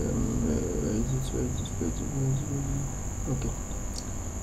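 A steady high-pitched shrill drone, insect-like, runs throughout under faint low voice sounds.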